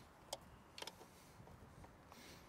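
Near silence with a few faint ticks of a hand-turned Allen wrench working the handle bolts on a Can-Am Spyder F3, one at about a third of a second in and a couple just before the one-second mark.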